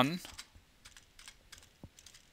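Typing on a computer keyboard: a few faint, irregular keystrokes.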